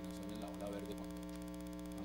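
A steady electrical hum with several fixed tones stacked on one another, mains hum in the broadcast audio, under faint speech.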